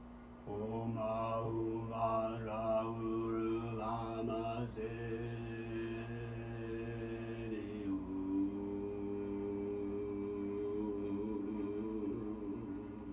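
Droning, mantra-like chant: a low sustained voiced tone with shifting vowel sounds over a steady drone begins about half a second in, then settles into held notes that shift pitch about eight seconds in.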